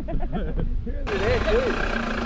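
Low, steady rumble of a Toyota Hilux pickup's engine under voices. About a second in, the sound changes abruptly to open-air noise with wind and voices over it.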